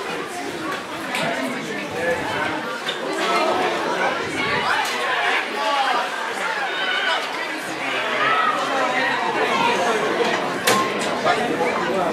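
Several voices talking over one another: pitch-side chatter from spectators and players at a football match, with a few sharp knocks, the loudest near the end.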